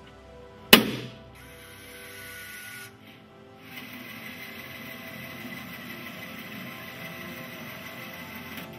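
Plain carbon steel tensile test piece snapping at its neck under load in a testing machine: one sharp, loud bang a little under a second in, ringing briefly. A steady hiss follows.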